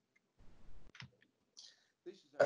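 Near silence with a faint low rumble about half a second in and a single soft click just after a second.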